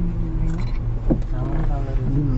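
Steady low drone of a road vehicle's engine and tyres, with a person's voice briefly over it in the second half.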